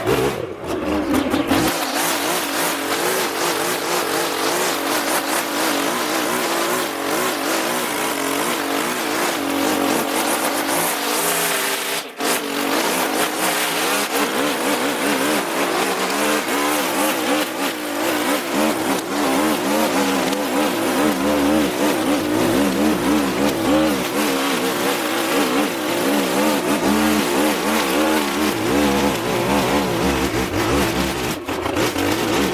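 Petrol string trimmer running at high revs, its pitch wavering up and down as the line cuts through long, thick grass, with a brief dip about twelve seconds in.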